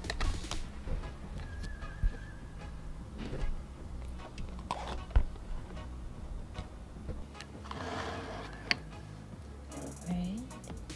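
Handling noise as the camera is set down among clutter on a dresser: low rumbling from hands on the camera body, with scattered knocks and clicks of small objects being moved around it, sharpest about two seconds in, at five seconds and near the end.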